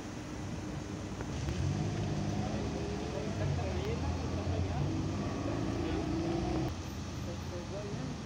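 Indistinct voices of several people talking in the background, loudest in the middle and fading near the end, over a steady low rumble of an idling vehicle engine.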